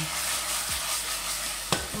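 Rabbit pieces and chopped garlic sizzling in olive oil in a stainless steel pot as the pot is shaken to toss them. A single sharp click comes near the end.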